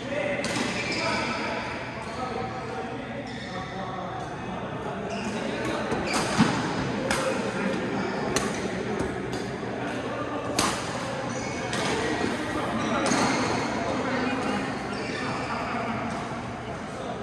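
Badminton rally: a racket striking a shuttlecock several times, sharp cracks about one to two seconds apart, over background voices.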